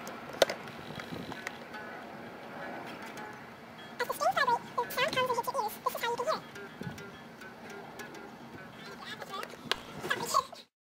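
Hollow-body electric guitar strings being picked, fairly quiet, with voices joining for a couple of seconds in the middle.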